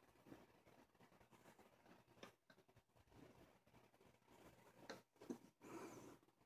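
Near silence, with a few faint light taps of wooden popsicle sticks being nudged into place on a tabletop, about two seconds in and again near the end, followed by a brief faint rustle.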